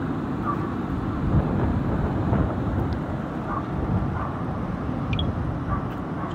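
Wind buffeting the microphone outdoors, a steady low rumble that swells and eases unevenly.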